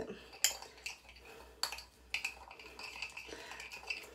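Metal spoon stirring a wet mixture of gelatin, milk and honey in a ceramic bowl. It clinks sharply against the bowl twice early in the stirring, then scrapes and clinks more quietly.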